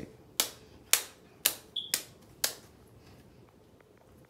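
Plastic action figures clacking against each other as they are banged together in a pretend fight: six sharp knocks about half a second apart, then a few faint ticks.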